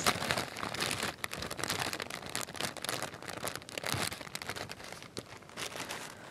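Tissue paper crinkled and rustled close to the microphone: a dense run of irregular crackles that thins out and quietens near the end.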